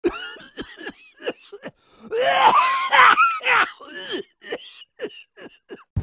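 A young man's voice making short, exaggerated vocal noises and cough-like sounds, breaking into loud laughter about two seconds in, then a few short sounds again.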